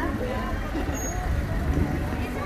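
A car running at low speed close by in street traffic, a steady low rumble, with people's voices talking around it.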